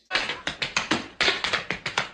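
Tap-dance steps on a hard floor: sharp taps several times a second in a quick, uneven rhythm.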